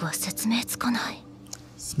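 Soft, hushed speech in Japanese (anime dialogue), a few short phrases, then a pause in the second half.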